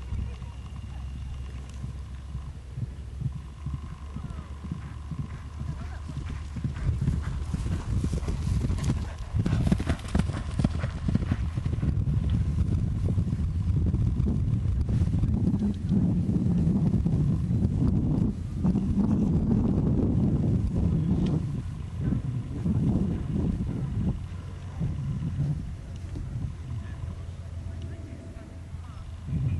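Hoofbeats of a Connemara stallion cantering on turf, getting louder as it passes close by in the middle and fading again near the end.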